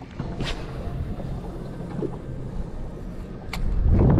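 Steady low hum and wash of a small outboard boat on open water, with two brief clicks. A low rumble, like wind on the microphone, swells near the end.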